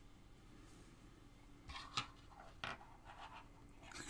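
Quiet scratching and rubbing as a punch-needle tool is pushed through cloth stretched taut in an embroidery hoop and drawn back, with two short sharp clicks about two seconds in and half a second later.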